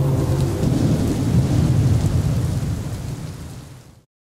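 Thunder sound effect: a heavy low rumble with a rain-like hiss, dying away near the end and cutting off abruptly.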